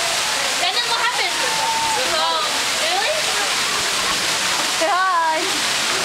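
Amusement-park carousel ambience: a steady rushing noise throughout, with high-pitched voices calling out over it about a second in, around two seconds in, and loudest about five seconds in.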